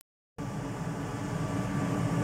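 Steady mechanical hum with a faint steady whine above it, like a running fan or motor. It cuts to dead silence for about a third of a second right at the start, then comes back unchanged.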